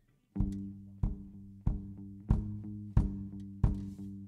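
Acoustic guitar strumming chords in a steady rhythm, starting about a third of a second in, with a strong accented strum roughly every two-thirds of a second and the chord ringing between strums: the opening of a live song.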